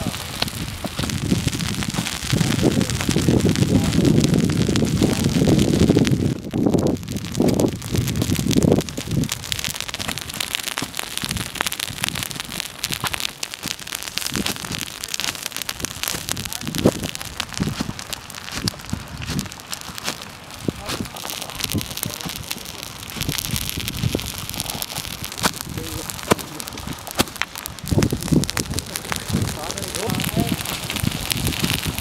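Dry grass and brush burning with a dense crackle while a fire hose sprays water onto the flames, hissing and pattering on the vegetation. A low rumble runs for several seconds near the start.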